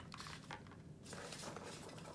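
Faint rustling and soft knocks of hands rummaging through the packing in a cardboard box, with an item set down on a table.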